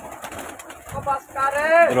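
A flock of pigeons fluttering out through a loft doorway, wings flapping. A man's voice calls out loudly in the last half-second.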